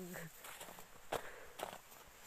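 Faint footsteps in snow, with two sharper steps or crunches a little after a second in.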